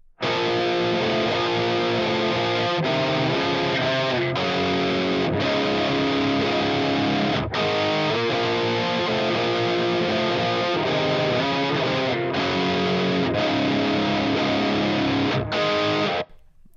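Heavily distorted electric guitar riff played back from the Fractal Audio Axe-FX III looper through its pitch-shift (virtual capo) block, shifted down four half steps so it sounds in C standard. It starts suddenly, with several brief breaks in the riff, and cuts off just before the end.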